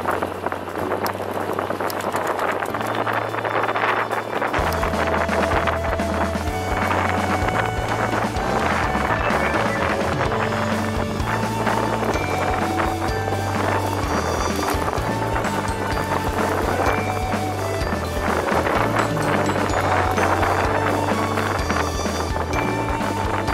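Background music with a bass line and a melody.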